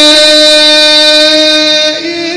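A male voice holding one long, steady note in melodic Quran recitation, sung into a microphone.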